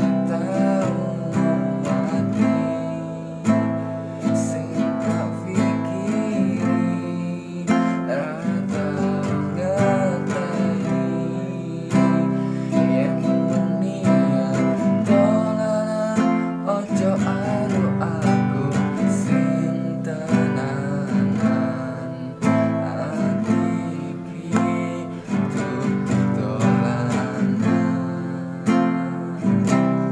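Acoustic guitar strummed in a steady down, down, up, up, down pattern, moving through the chords C, A minor, F and G.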